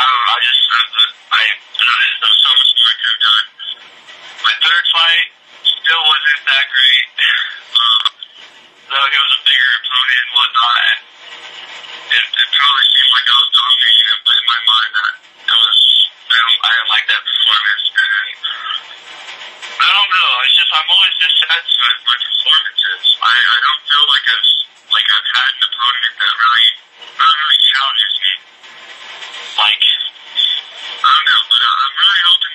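Speech only: a voice talking in phrases with short pauses, sounding thin and tinny as if over a phone line.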